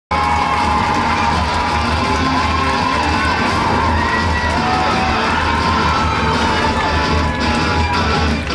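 An audience cheering and whooping over loud music.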